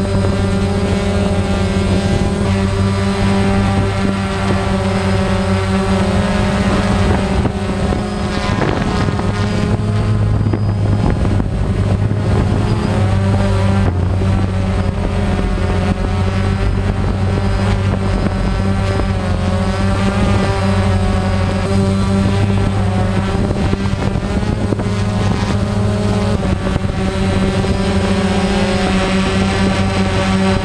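DJI Phantom quadcopter's four propellers and motors running in flight, heard close up from the camera it carries: a loud, steady buzzing whose pitch wavers up and down as the motors change speed to manoeuvre.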